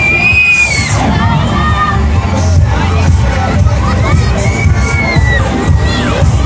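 Children on a jumper fairground ride screaming, one long high scream at the start and another about four seconds in, with more shrieks between, over loud fairground music with a heavy bass.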